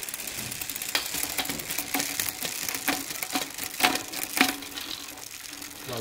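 Bicycle chain running over a Shimano Sora rear cassette as the drivetrain is turned by hand, a steady fine ticking with several louder clicks as the rear derailleur shifts down the cassette. The shifting runs smoothly.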